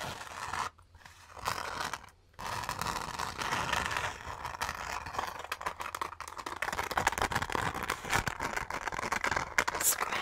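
Fingers scratching and rubbing over the glitter-covered surface of a fabric makeup bag: a dense, crackly scratching made of many fine clicks, stopping briefly twice in the first couple of seconds and then running on without a break.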